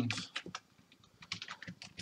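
Typing on a computer keyboard: irregular keystrokes, a few near the start and then a quicker run of them in the second half.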